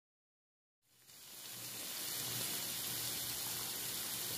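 Strips of liver and sliced onions frying in a stainless-steel pan, a steady sizzle that fades in about a second in after silence. The liver is browned and nearly done.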